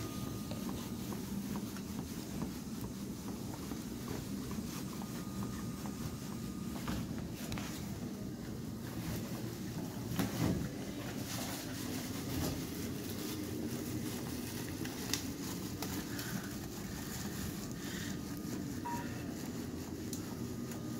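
Steady low rumble of equipment and room noise, with scattered clicks and rustles of plastic sheeting and gowns being handled, loudest about ten seconds in. A faint thin tone sounds near the start and again around five to seven seconds.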